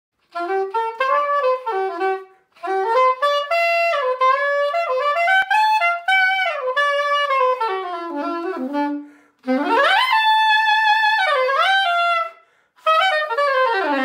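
Yanagisawa Elimona S880 soprano saxophone played solo: a flowing melody in four phrases with short pauses between them. About ten seconds in there is a quick upward glide into a held high note.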